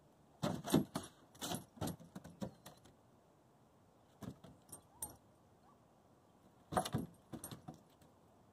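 Dog collar tags jingling with light clicks in three short bursts as the dogs move about: one near the start, a shorter one about halfway, and one near the end.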